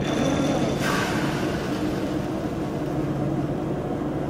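Bourgault 7000 series air seeder's hydraulically driven metering system starting up and running steadily for a calibration run, a steady mechanical hum, with a brief hiss for about the first second as the hydraulic oil is diverted to the meters.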